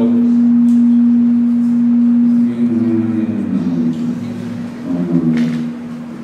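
Microphone feedback through the hall's public-address system: a loud, steady low howl on one pitch, strongest for the first two and a half seconds, then fainter under voices until it stops near the end.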